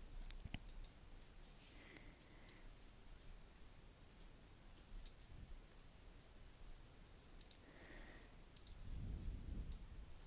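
Faint computer mouse clicks, scattered single clicks and a few quick pairs, over near silence.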